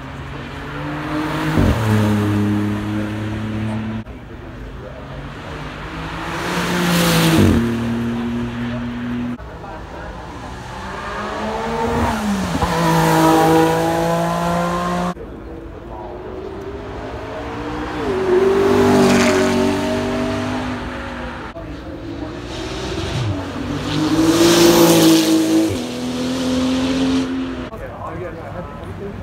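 A run of high-performance cars accelerating past one after another, in short back-to-back clips. Each engine note swells, climbs in pitch, then drops sharply as the car goes by and fades.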